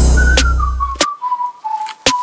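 Electronic music with a whistled melody over a deep bass that fades out about a second in, punctuated by sharp percussive hits.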